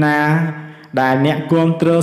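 A man's voice narrating in Khmer in a steady, chant-like monotone, with long level-pitched syllables and a brief dip about halfway through.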